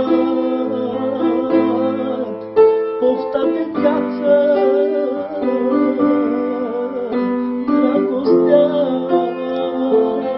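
A male voice singing a manele melody live, with a wavering, ornamented line over held chords from an instrumental accompaniment.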